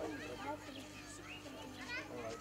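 Faint background chatter of a group of people, with children's voices among them.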